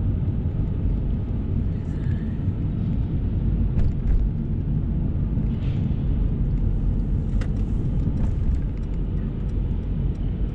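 Steady low rumble of a Mercedes-Benz car driving at city speed, road and engine noise heard from inside the cabin, with a few faint clicks.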